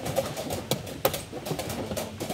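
A few sharp clicks of wooden chess pieces being set down and a digital chess clock's button being pressed in quick succession during a blitz game, over a low background murmur.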